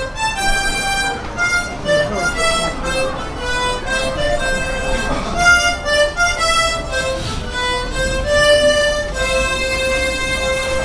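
Three children playing a march together on harmonicas: a melody of short, distinct notes that settles into a long held note near the end.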